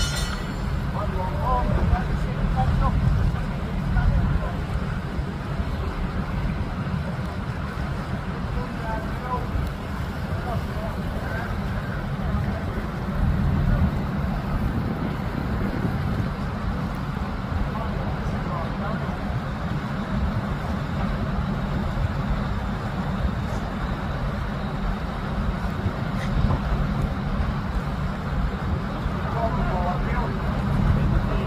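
Steady low rumble of a running engine, with faint distant voices over it.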